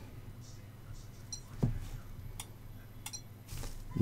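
A few faint, sharp clicks, three of them spread over the second half, from crocodile-clip test leads being handled and clipped onto a small capacitor's legs, over a low steady hum.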